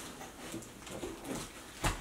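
Faint snuffling, sniffing sounds, a person's voice imitating the growling, snuffing noise of a bear. A single sharp knock comes just before the end.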